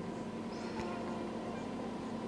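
A faint steady hum with a low tone and a few fainter higher tones: background room tone.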